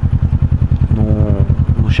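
Motorcycle engine idling at a standstill, a steady low pulsing rumble.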